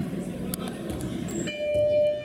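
An electronic horn or buzzer starts suddenly about one and a half seconds in and holds a loud, steady, multi-tone blare in the hall; this is typical of the signal for the end of the first half. Before it there is general noise from the court and a sharp knock of the ball.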